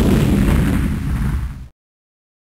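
Explosion sound effect: the deep rumbling tail of a loud blast, fading out and then cutting off abruptly shortly before the end.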